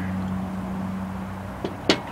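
A steady low mechanical hum that fades out about a second and a half in, followed by a sharp click near the end.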